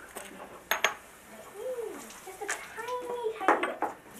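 Light clinks and knocks of brushes and small plastic glaze cups on a classroom table, a pair about three-quarters of a second in and a quick cluster near the end.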